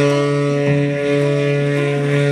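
Tenor saxophone holding one long, steady low note in a D-minor improvisation, with the tones of a 9-note hang drum ringing on beneath it.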